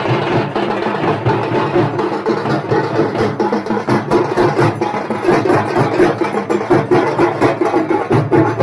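A group of hand-held frame drums (thappu) beaten together in a fast, driving rhythm, the strikes coming several times a second.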